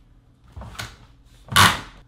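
Metal clamp bracket joining two home theater recliner seats being slid together: a short scrape about half a second in, then a louder thump about a second and a half in as the chair goes into place.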